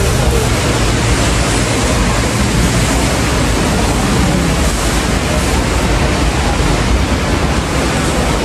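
Steady, even rushing noise with a low hum underneath: supermarket background din picked up by a handheld phone.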